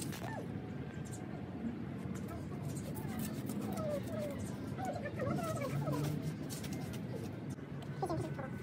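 Domestic cat scratching and raking loose sandy soil with its paws to cover its droppings: soft, irregular scratches over a faint outdoor background.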